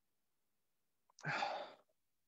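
One sniff, a single noisy breath in through the nose lasting about half a second, a little over a second in, taken with the nose in a wine glass to smell the wine.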